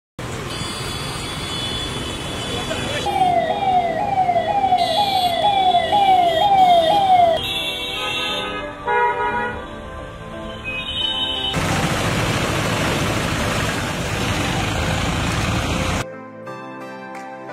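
Ambulance siren in heavy road traffic: an electronic wail that falls in pitch and jumps back up about twice a second for some four seconds, with vehicle horns honking around it. A steady rush of traffic noise fills the last few seconds.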